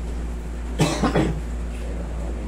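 A person coughs, a short run of three quick coughs about a second in, over a steady low room hum.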